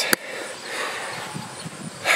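A single click of the camper's exterior rocker switch for the docking lights just after the start, followed by steady outdoor background noise.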